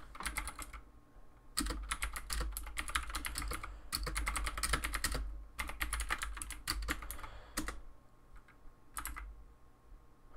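Typing on a computer keyboard in several quick runs of keystrokes with short pauses between them, and only a few keystrokes near the end.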